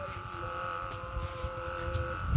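Steady droning hum of a large chong kite's hummer (dak) sounding high overhead, with a low wind rumble on the microphone. A second, lower pair of steady tones joins about half a second in.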